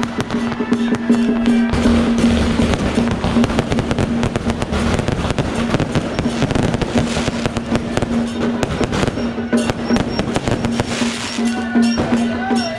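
A dense, continuous crackle and popping of firecrackers and aerial fireworks, with music and a held note playing under it.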